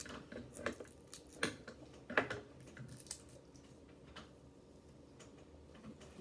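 Small plastic snack packet being torn open and crinkled by hand: a handful of faint, separate crackles and clicks over the first few seconds, then quiet handling.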